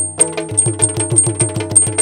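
Yakshagana percussion interlude: a chande drum beaten with sticks and a maddale played by hand, in a steady rhythm of about four strokes a second. Small brass hand cymbals (tala) ring high on each beat.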